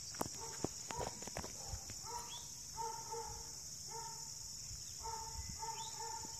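Steady high-pitched chorus of insects, faint, with a few sharp clicks in the first second and a half. From about two seconds in, an animal calls over it in a run of short, repeated, evenly pitched notes.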